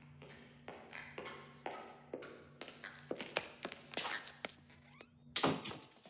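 Irregular taps and thunks of paper and small objects being handled at a desk, with one louder thump about five and a half seconds in, over a steady low hum.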